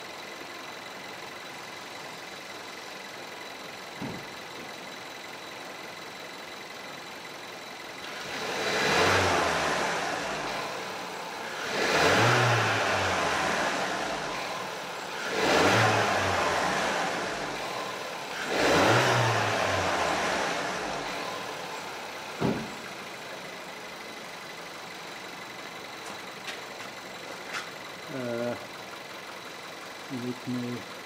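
VW Golf Mk VII 1.4 TSI turbocharged four-cylinder petrol engine idling, then revved four times with the accelerator pedal from about eight seconds in, each rev rising and sinking back to idle over about two seconds.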